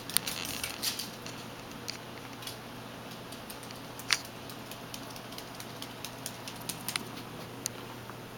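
Quiet indoor room tone with a low steady hum, broken by a few scattered light clicks and taps.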